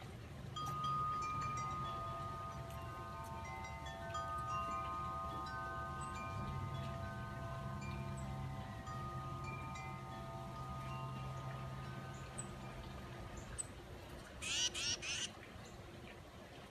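Wind chimes ringing: several notes struck together in the breeze and ringing on, slowly dying away by about twelve seconds in. Near the end, a bird gives a quick run of three or four loud, harsh, high calls.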